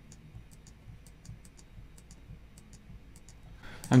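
Computer keyboard keystrokes: light, irregular clicks at about three or four a second, over a faint low hum.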